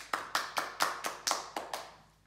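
Children in the audience clapping their hands in a steady rhythm: about nine sharp claps at four to five a second, stopping near the end.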